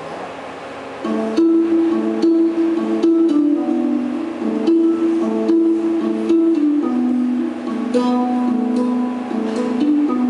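Music played on a plucked string instrument, coming in about a second in with a repeating pattern of plucked notes after a moment of low room noise.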